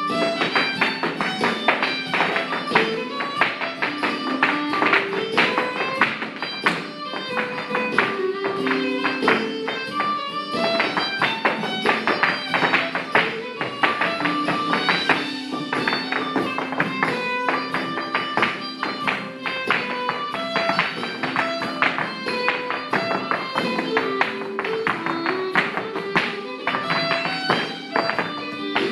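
Rapid, rhythmic clicks of two dancers' hard shoes in traditional Irish step dancing, struck over an Irish set dance tune playing throughout.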